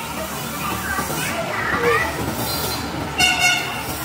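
A short, steady horn-like toot, about half a second long, comes near the end over faint background voices and noise.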